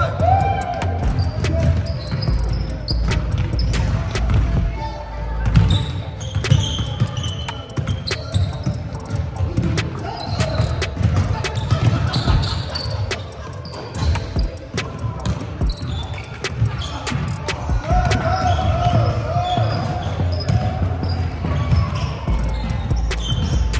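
Basketball bouncing on a hardwood gym floor during play, with many short impacts throughout over the echoing rumble of the hall, and voices calling out now and then.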